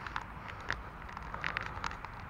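Steady low outdoor rumble picked up on a handheld action camera's microphone, with scattered faint clicks at irregular moments.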